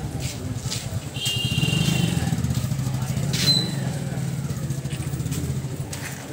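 A motorcycle engine running nearby with a low, steady, rapidly pulsing note. It swells about a second in and fades away near the end.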